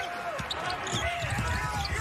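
A basketball being dribbled on a hardwood court, with sneakers squeaking in short chirps as players cut and drive.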